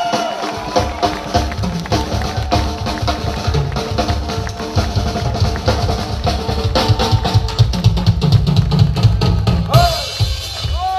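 Live rock band with the drum kit to the fore: kick and snare hits and cymbals over held chords from the band, the drumming getting busier in the last few seconds.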